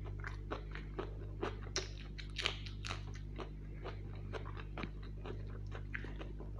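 Close-miked chewing of a mouthful of rice and curry, with crunchy bites and wet mouth clicks coming thick and fast for the first three seconds and more sparsely after; the loudest crunch is about halfway through.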